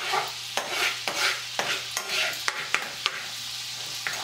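Wine and clam-juice sauce sizzling steadily in a sauté pan as it reduces, with several sharp clicks and scrapes of a metal spoon and fork as mushrooms and shallots are lifted out of the pan.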